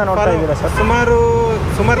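A man speaking in Kannada, with a steady low rumble of road traffic underneath.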